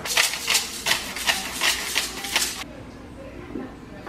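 Pepper mill twisted by hand over a cooking pot, grinding in a quick run of gritty strokes, about six a second, that stops about two and a half seconds in.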